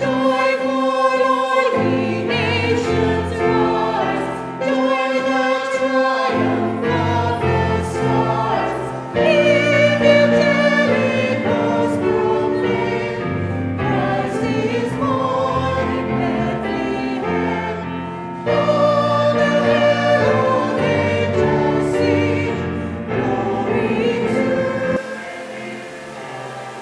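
Small mixed choir of men's and women's voices singing a Christmas carol, in phrases with short breaks between them. The singing dies away about a second before the end.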